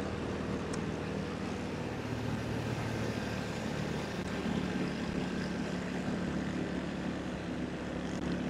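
Steady engine hum and road noise of a car driving along a city highway, heard from inside the moving car.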